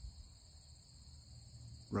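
Crickets chirring steadily and faintly in the background, a continuous high-pitched insect drone.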